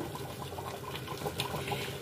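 Large pot of soup simmering on the stove: a soft, steady bubbling hiss with a few faint pops.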